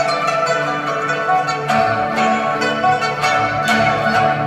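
Chinese orchestra playing, with a pipa plucking a line of quick, separate notes over held notes from the rest of the ensemble.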